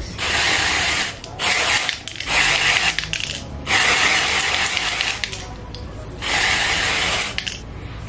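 Aerosol lace tinting spray hissing in five bursts onto a wig's lace, the longest just over a second.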